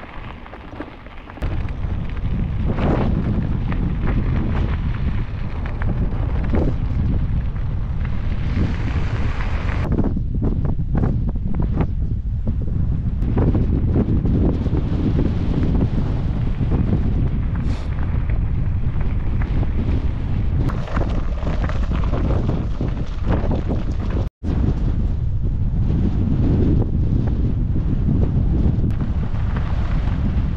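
Wind buffeting the microphone of a camera riding on a bicycle, a loud, steady low rumble that starts about a second and a half in. The sound cuts out for a moment about four fifths of the way through.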